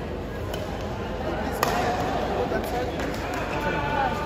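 Badminton rackets striking the shuttlecock during a fast doubles rally: a few sharp hits, the loudest about one and a half seconds in, over the chatter of spectators in the hall.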